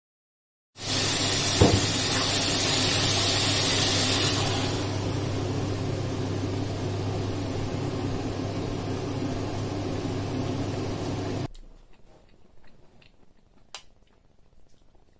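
Chicken and vegetables sizzling in a frying pan as they are stirred with a wooden spatula: a loud, even hiss over a steady low hum, strongest for the first few seconds and then easing a little. It cuts off suddenly about two and a half seconds before the end, leaving faint clicks of a spoon on a bowl.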